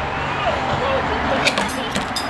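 Indistinct voices in the background, with a brief sharp click about one and a half seconds in.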